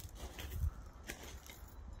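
Quiet outdoor background: a steady low rumble with a few faint clicks and taps scattered through it.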